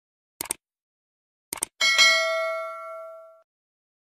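Subscribe-button animation sound effect: two short mouse-style clicks, then a bright notification-bell ding that rings out for about a second and a half.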